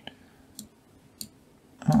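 Computer mouse button clicking: three short, sharp clicks about half a second apart.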